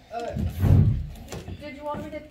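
A heavy, deep thump and rumble lasting about half a second, starting about half a second in, followed by a few light clicks.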